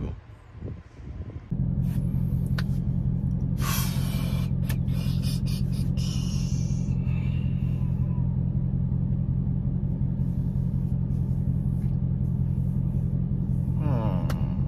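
Dodge Scat Pack's 392 V8 engine idling steadily, heard from inside the cabin, cutting in abruptly about a second and a half in as a low, even rumble. A few brief clicks and rustles sit over it in the first few seconds.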